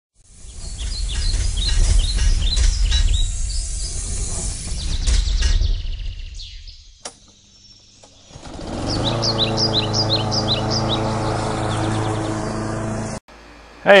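Birds chirping over a loud low rumble. After a brief lull and a click, a steady low drone starts with more bird chirps over it, and it cuts off abruptly near the end.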